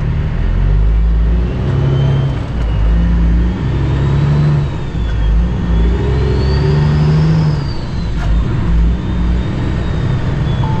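A Cummins ISX diesel engine in a 2008 Kenworth W900L, heard from inside the cab, pulling away from low speed. The engine note breaks off and picks up again every second or two as the truck is shifted up through the gears, with a faint high whine rising and falling over it.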